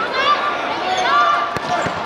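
A football struck on a penalty kick: two short thuds close together near the end, over spectators' voices.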